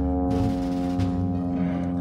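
Airplane flying overhead: a steady, noisy drone made of several held tones that do not change in pitch.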